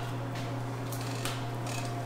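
Faint light metallic clicks from an electric folding bike's frame hinge as the released frame swings round to fold, over a steady low hum.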